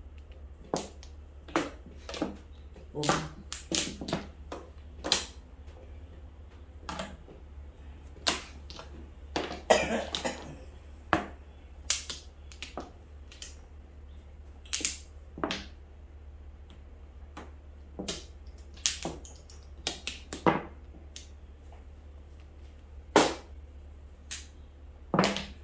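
Mahjong tiles clicking sharply as they are drawn, placed and discarded on the table and knocked against other tiles. The clicks are irregular, about one every second or so, with a short burst of clattering around ten seconds in. A steady low hum runs underneath.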